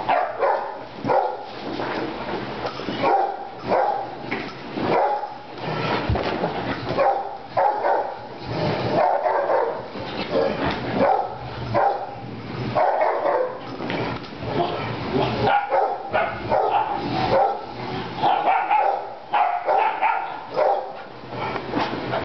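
Wolfdogs playing rough, barking and vocalizing in short bursts that follow one another closely and go on without a break.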